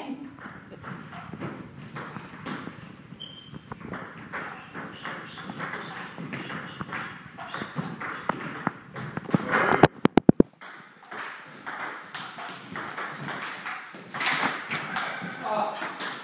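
Table tennis ball being hit back and forth, a quick run of light clicks off bats and table, with players' voices in the background. There is a short burst of loud, sharp clicks about ten seconds in.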